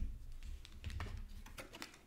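Oracle cards being handled and laid out on a cloth-covered table: a few faint, scattered clicks and taps.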